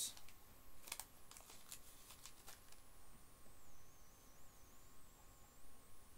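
A few faint rustles and clicks from the opened chocolate and its wrapper being handled in the first couple of seconds, then near quiet over a faint steady hum.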